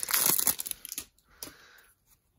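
Foil trading-card pack wrapper crinkling as the cards are worked out of it. It is loudest in the first half second, then dies down to a faint rustle.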